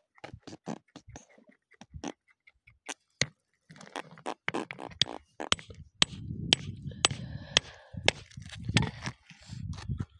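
Pieces of rock clicking, knocking and scraping against each other as they are picked over and lifted by hand, in a string of short, sharp clicks. From about six seconds in, a rough rumbling handling noise runs between the clicks.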